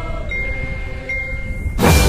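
Marching band music: soft held chords with a ringing high note, then the full band comes in loudly near the end.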